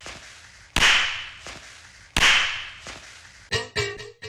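Sampled percussion loop playing on its own: two loud, sharp, noisy hits about a second and a half apart, each fading out slowly, with lighter hits between. Near the end a different loop cuts in with quick, clicky pitched taps.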